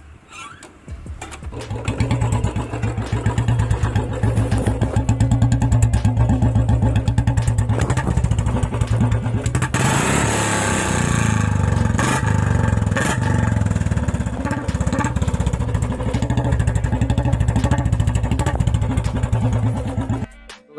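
Royal Enfield Bullet 350's single-cylinder engine starting about a second in, then running loud with a rapid, steady thump through an aftermarket full bend-pipe exhaust.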